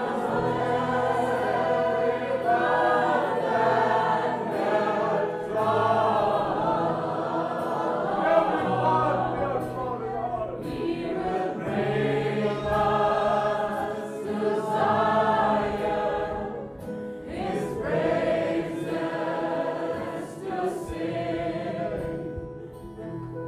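A group of voices singing a hymn together, in phrases that rise and fall with short breaks between lines.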